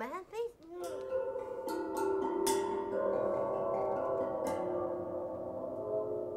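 Waterphone, a steel resonator bowl ringed with bronze rods, struck with a mallet: about four strikes, each leaving long metallic ringing tones that overlap and waver slightly in pitch.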